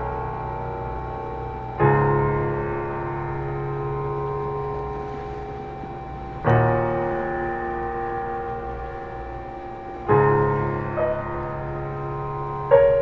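Slow, sustained piano chords played on a keyboard: three chords struck about four seconds apart, each left to ring and fade, with a brief higher note added just after the last.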